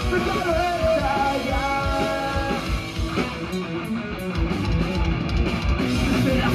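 A punk rock band playing live: distorted electric guitars, bass and drum kit at full volume, with a sung vocal line and held notes in the first half.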